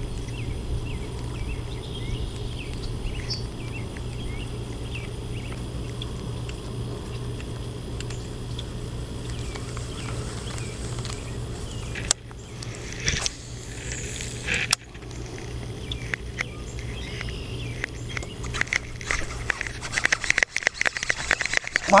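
Steady low rumble of wind on the microphone. In the last few seconds a baitcasting reel cranks in line with rapid clicking as a small bass is hooked and reeled in.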